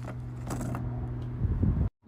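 Handling sounds as a fabric pouch is slid off a metal makeup compact: a couple of light clicks, then louder rustling and rubbing near the end, over a steady low hum. The sound cuts off abruptly just before the end.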